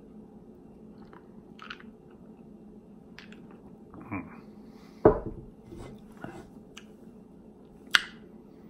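Small mouth and glass sounds as an iced drink is sipped from a glass mug and swallowed: faint clicks and ice shifting, with a sharp thump about five seconds in and a short click near the end.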